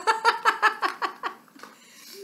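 A woman laughing out loud: a quick run of 'ha' pulses, about seven a second, that dies away after about a second and a half.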